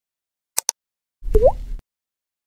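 Cartoon-style sound effects: two quick sharp clicks, then about a second later a low thump with a rising 'bloop' pop.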